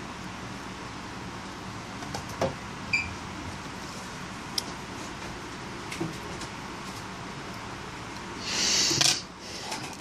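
Steady low hum of room tone with a few light clicks and taps as a soldering iron and tweezers work on a phone's circuit board, and a short hiss about a second before the end.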